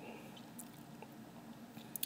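Faint crackle and a few small clicks of fingers peeling the backing off thin strips of double-sided tape laid on a paper drawing, over a low steady hum.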